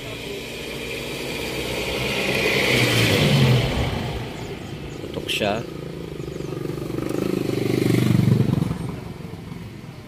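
Motor vehicles passing by, heard as two swells that rise and fade, the first peaking about three seconds in and the second near eight seconds.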